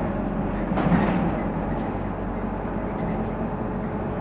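Inside a moving Dennis Dart SLF single-deck bus: its diesel engine runs steadily under way with road and body noise. About a second in there is a louder jolt and rattle, and a smaller knock follows near two seconds.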